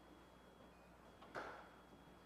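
Near silence: the room tone of a quiet hall, with one short soft knock about one and a half seconds in.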